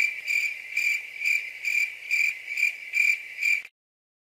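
Cricket chirping sound effect: a steady high chirp pulsing two to three times a second, which starts abruptly and cuts off suddenly near the end. It is the comic 'crickets' silence of puzzlement, edited in.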